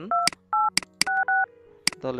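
Softphone DTMF keypad tones as digits are dialled: four short two-note beeps, the last two the same, with sharp clicks between them.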